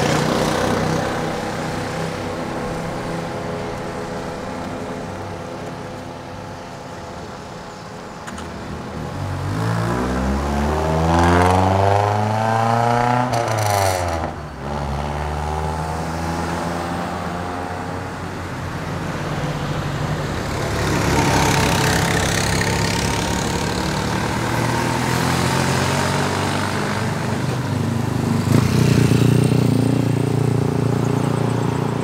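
Street traffic with engines running throughout. About ten seconds in, a vehicle's engine passes close, rising in pitch and then dropping sharply as it goes by. Near the end another engine, a motorcycle, grows louder as it approaches.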